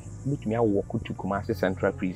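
A man talking, with a steady, high insect chirring behind him throughout.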